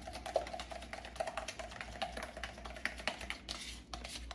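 A metal fork beating thick Greek yogurt and sugar inside a plastic yogurt tub: a quick, irregular run of light clicks and scrapes as the fork knocks and drags against the tub's sides and bottom.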